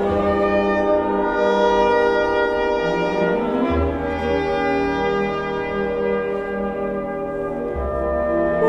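Symphony orchestra playing slow, sustained chords, with the brass to the fore.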